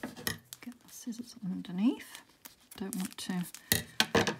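A woman's voice murmuring under her breath while her fingernail scratches and picks at sticky tape on a packaging tube, with a few sharp scratches or taps near the start and just before the end.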